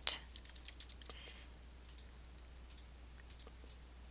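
Computer keyboard typing: a string of faint, irregularly spaced key clicks as a single word is typed.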